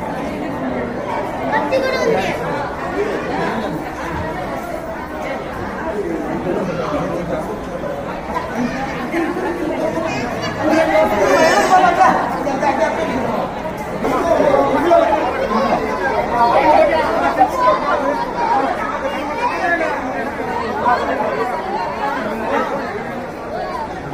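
Many people talking at once: a steady crowd chatter of overlapping voices, with no single voice standing out.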